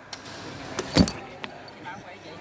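Sharp knocks of a badminton rally, racket strikes on the shuttlecock and players' footfalls on the court: two close together about a second in, the second the loudest, and a lighter one just after.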